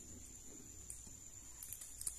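Faint scratching of a ballpoint pen drawing on a small slip of paper on a tabletop, with a few light ticks.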